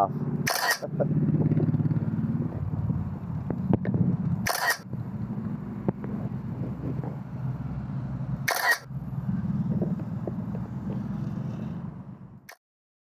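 Camera-shutter sound from the drone app, three clicks about four seconds apart, each marking a frame captured for a DJI Mini 3 Pro hyperlapse. Under them runs a steady low engine hum, like nearby traffic, which cuts out briefly at each click.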